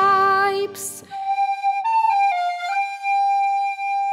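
Music: a held note of the song with its accompaniment stops about a second in, then a solo flute-like woodwind plays a short phrase of a few notes and settles into one long held note.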